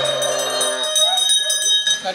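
Traditional ritual music for a daiva ceremony: steady bell-like ringing over rhythmic percussion. A low held wind-instrument tone stops under a second in, and the music thins out near the end.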